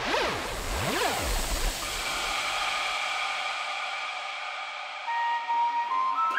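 Psytrance music in a breakdown. Sweeping synth sounds and the bass fall away about two and a half seconds in, leaving a fading wash, and a synth lead melody comes in near the end.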